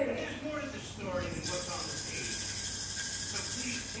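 Quiet voices, then a steady high hiss for the last two and a half seconds.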